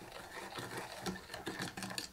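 Metal spoon stirring yeast into water in a plastic measuring jug, faint uneven scraping and rubbing against the jug's sides and bottom as the yeast is dissolved.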